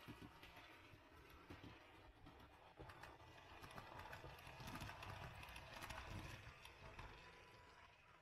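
Faint model train running along the layout track: a low rumble with irregular clicking from the wheels on the rails. It grows louder to a peak about five to six seconds in, then fades.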